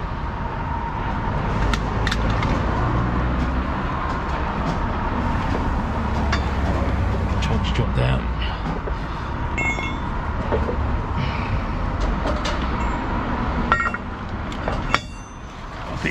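Heavy recovery truck's engine running while its hydraulic underlift is worked by remote control: a steady rumble with a faint whine and scattered metallic clinks. The sound drops away briefly near the end.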